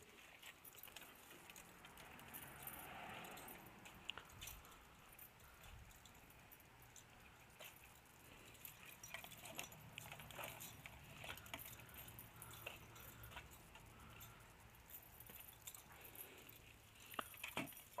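Near silence with faint scattered clicks, rustles and light metallic jingles of gear being handled and carried.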